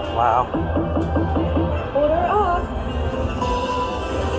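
Big Hot Flaming Pots slot machine playing its electronic bonus-feature sound effects. A warbling tone is followed by a quick run of short rising blips at about five a second, then a wobbling upward glide, and a held tone near the end, over a low casino rumble.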